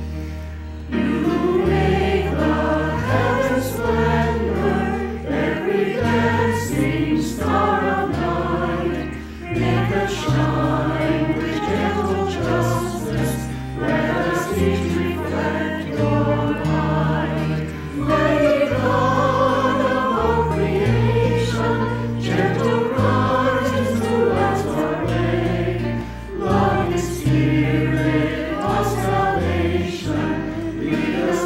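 Mixed choir singing a slow hymn, accompanied by electric bass guitar and acoustic guitar, with the bass changing note about every second.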